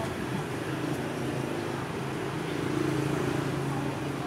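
Street traffic with a motorbike engine running steadily, growing louder about three seconds in.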